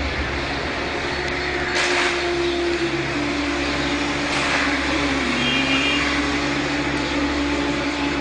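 A steady engine hum whose tone wavers slightly in pitch, with two brief hissing bursts about two and four and a half seconds in.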